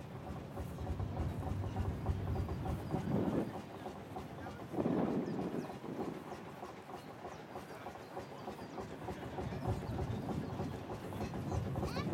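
An engine running steadily at idle with a low rhythmic beat, with people talking in the background.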